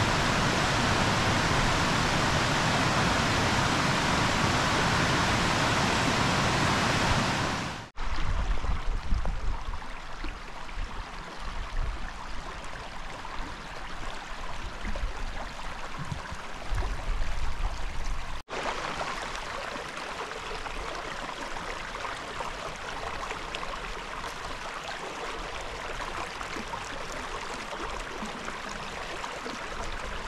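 Mountain beck cascading over rocks: a loud, steady rush of water for about eight seconds that cuts off abruptly. After that comes a quieter, uneven noise with low rumbles, and in the last third a softer steady hiss.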